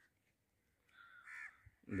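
A crow giving one short, faint caw about halfway through.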